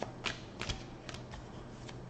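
A deck of tarot cards being shuffled by hand: soft rustling with a few short card flicks.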